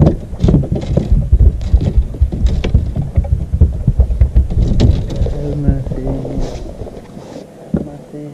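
A quick, irregular run of close knocks and thumps for about five seconds, then easing off, with muffled voices near the end.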